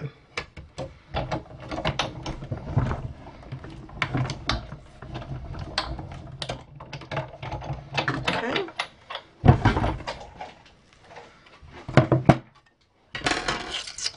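Sizzix Big Shot die-cutting machine cranked by hand, its plastic cutting plates and stitched-circle dies rolling through the rollers with irregular clicks and creaks. Two louder knocks come in the second half.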